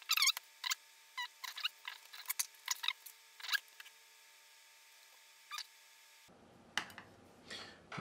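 Light clicks and taps, a dozen or so in the first four seconds and a few more later, from small wires and parts being handled on an FPV drone frame during wiring.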